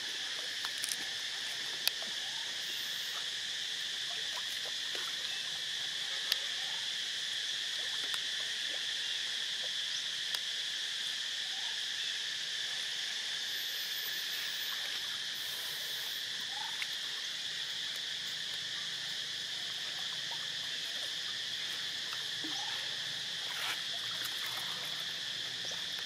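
Steady insect chorus, an unbroken high trilling that holds at one level, with a few faint clicks and small chirps over it.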